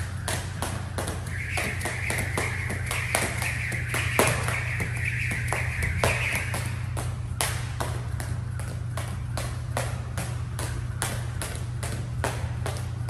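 Jump rope slapping the gym floor in a steady rhythm, about three strikes a second, over a steady low hum. A hiss joins in for a few seconds in the middle.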